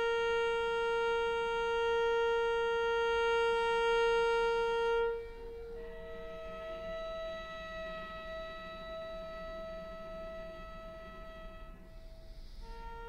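Solo cello playing long held bowed notes in a contemporary piece written for retuned (scordatura) strings: one loud sustained note for about five seconds, then a sudden drop to a softer, higher held note.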